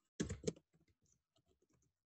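Typing on a computer keyboard: a short louder burst of sound at the start, then a run of faint, quick keystroke clicks.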